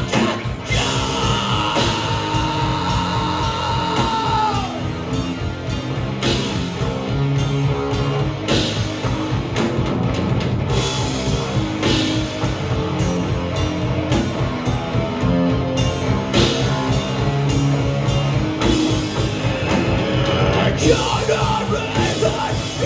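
A live heavy rock band playing: distorted electric guitars, bass and a drum kit pounding steadily, with vocals. A high note is held for about the first four seconds and then drops away.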